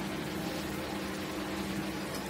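Steady background hiss with a faint low hum underneath, unchanging throughout.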